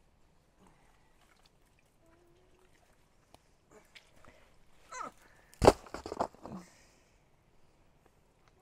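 A plastic off-road recovery board being worked free of sticky mud, with a loud slap about halfway through followed by a few smaller knocks.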